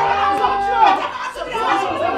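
Several voices shouting and talking over one another in a loud scuffle, with no clear words.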